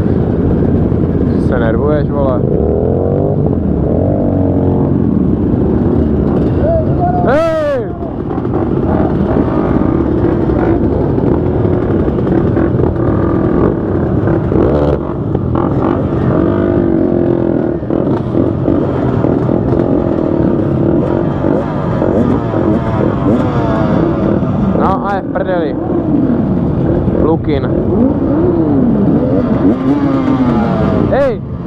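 Many motorcycle engines running together in a large slow-moving group, idling and being blipped, their pitch repeatedly rising and falling, with a sharp high rev about seven seconds in and a few more near the end.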